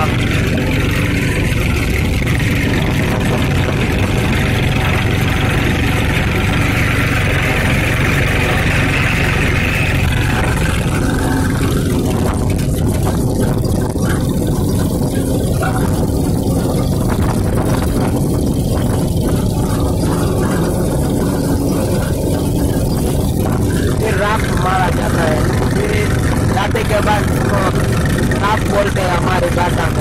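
An old diesel tractor's engine running steadily while it pulls a tine cultivator through the soil.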